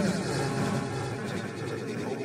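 Erica Synths Pico DSP granular delay chopping a looped spoken-word sample into short grains: a continuous, dense smear of overlapping voice fragments, with the delay modulated by random CV.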